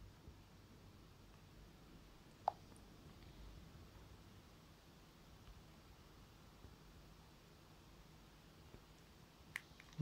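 Near silence: room tone, with one brief blip about two and a half seconds in and a faint click near the end.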